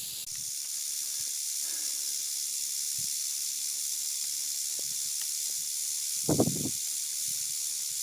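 Mojave rattlesnake (Crotalus scutulatus) rattling its tail in a steady, high, hissing buzz: a defensive warning from a coiled snake that has been nearly stepped on. A brief low sound breaks in about six seconds in.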